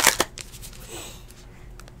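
Stack of foil-wrapped trading card packs handled and shuffled between the hands: a quick run of crinkling crackles at the start, then only faint rustles and a couple of small clicks.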